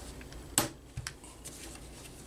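Plastic ball-joint ends of a radio-controlled car's turnbuckle suspension arm being snapped onto their ball studs: a sharp click about half a second in, then a smaller click about a second in.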